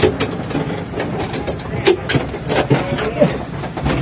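Engine of a small passenger vehicle running, heard from inside its cabin, with scattered knocks and rattles.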